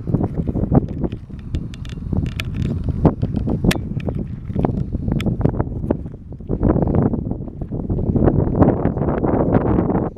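Wind buffeting the camera's microphone in uneven gusts, with scattered small clicks and knocks.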